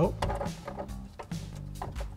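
Background music with a few short plastic clicks and handling noise as a wiring connector is unplugged from a brake light bulb socket.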